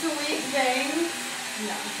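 Electric hair clippers running with a steady buzz while a woman talks over them.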